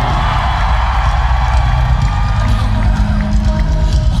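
A live rock band playing loudly through a concert PA, with distorted electric guitars, heard from within the audience, and the crowd cheering along.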